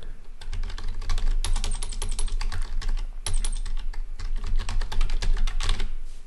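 Typing on a computer keyboard: a fast, continuous run of keystrokes as an email address is entered.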